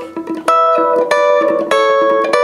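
Fender Telecaster electric guitar playing a hybrid-picked rockabilly lick. Single bass notes alternate with ringing chord stabs, a new chord struck roughly every half second.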